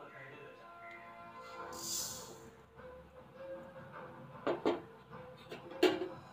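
Faint background music. About two seconds in, a brief hiss of black seeds being poured into a dry aluminium kadai, then a few sharp knocks near the end.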